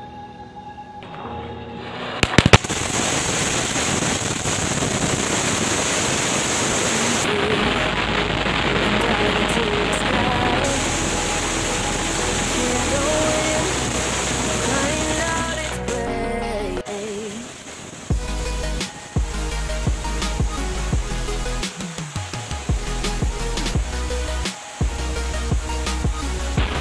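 A crackling anar (Diwali fountain firework) in a beer-can shell catches with a few sharp cracks about two seconds in, then sprays with a steady loud hiss and crackle. Background music runs over it, with a steady bass beat in the second half.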